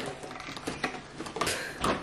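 Light clicks and rustles of a cardboard advent calendar box of coffee pods being handled and its lid lifted, with a louder clatter about three-quarters of the way through.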